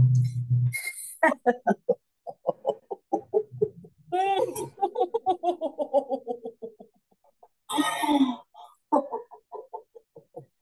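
A woman laughing deliberately on an 'oo' vowel as a laughter-yoga exercise, in quick staccato pulses of about four to five a second. A low held hum stops just under a second in. A long run of laugh pulses in the middle steps down in pitch, and short breathy bursts come near the start and near the end.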